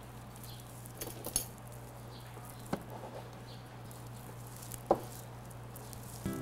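A few light knocks, clinks and scrapes of a wax candle and hand tools being handled at a workbench while the candle is flattened, the sharpest knock near the end, over a steady low hum.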